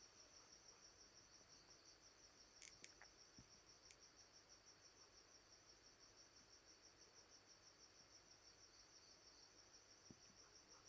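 Near silence with a faint, steady, high-pitched pulsing trill, like a cricket, and a few faint clicks about three seconds in.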